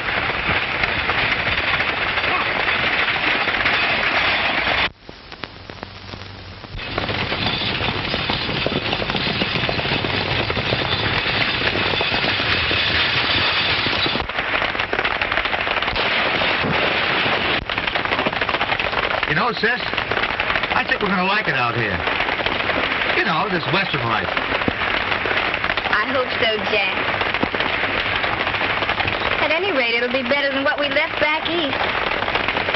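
Horse-drawn stagecoach on the move: a dense, continuous clatter of hooves and wheels, briefly quieter about five seconds in. A voice comes in over it in the last third.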